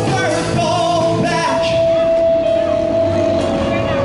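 A small live band playing: strummed acoustic guitar, keyboard and drum kit, with a man singing. A long note is held through the second half.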